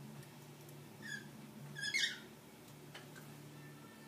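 Metal forks and coins clinking lightly against each other as they are balanced on a glass rim: a soft clink about a second in and a brighter, louder one just before the middle. A faint steady low hum runs underneath.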